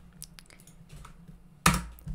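Computer keyboard clicks: a few faint key ticks, then one loud clack near the end.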